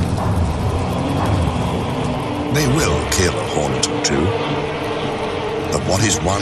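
Giant hornets and European honeybees buzzing at a hive under attack: a loud, dense drone of wings whose pitch keeps wavering up and down, with scattered sharp clicks.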